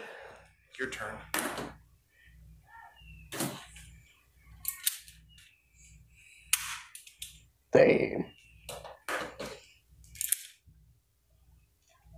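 Nickel-plated .357 revolver dry-firing on empty chambers: a series of sharp metallic clicks, one or two seconds apart, as the hammer falls with no round going off.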